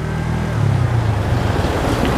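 Motor scooter engine running while riding, with wind rushing over the microphone. The sound grows a little louder about half a second in.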